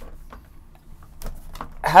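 A pause in a man's talk, with low room tone and a few faint light clicks, then his voice resumes just before the end.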